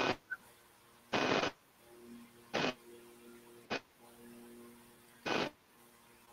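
Four short bursts of hiss with a faint hum between them: a video call's audio breaking up over a failing internet connection.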